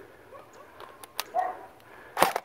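A dog gives a short yip, faint about half a second in and clearer about one and a half seconds in. Two sharp clicks come just before the clearer yip.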